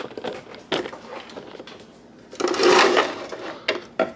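Plastic and metal kitchen utensils knocked about in a wooden drawer as a hand rummages through them: scattered clicks and knocks, with a louder rattling scrape of under a second about two and a half seconds in.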